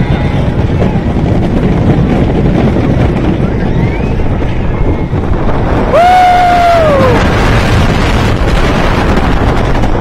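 Wooden roller coaster train rumbling along its wooden track, with heavy wind buffeting the microphone. About six seconds in, a rider lets out a loud, long yell, about a second, that rises briefly and then falls in pitch.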